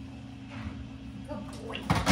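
Dog sniffing and snuffling with its nose down at a scratch board, faint and irregular, with a sharper, louder sound just before the end.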